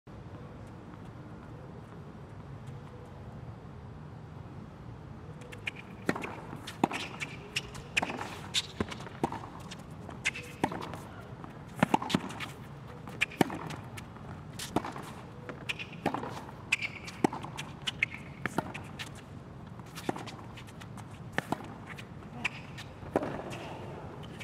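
Tennis rally on a hard court: sharp racket strikes on the ball and ball bounces, about one each second, beginning about six seconds in with the serve and running on through a long exchange. Before the serve there is only low steady arena background.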